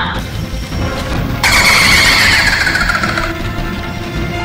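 Horror-film soundtrack: a low rumbling music bed, then about a second and a half in a sudden loud high screech that slides down in pitch for about two seconds.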